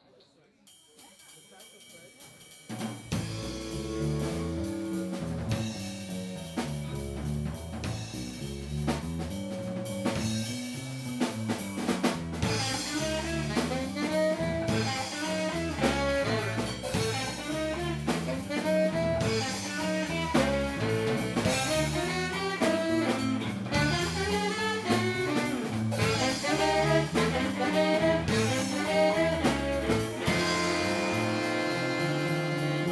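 Live rock band with drum kit, electric guitar, electric bass and two saxophones playing an instrumental. A few drum strikes come first and the full band comes in about three seconds in; the saxophones carry a melody in the later part as the music grows louder.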